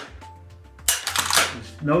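Sharp metallic clicks and a short sliding clatter from a Krieghoff Semprio in-line repeating rifle's action being dry-fired and cycled, starting about a second in.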